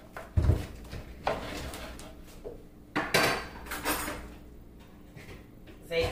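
Kitchen clatter: a knife knocking on a plastic cutting board as lemons are sliced, with clinks of metal kitchenware. A dull thump comes about half a second in, and a sharper clatter about three seconds in.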